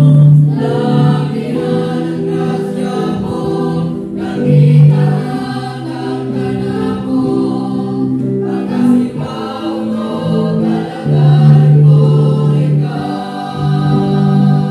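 Mixed choir of men's and women's voices singing a gospel song together, with sustained notes that shift in pitch throughout.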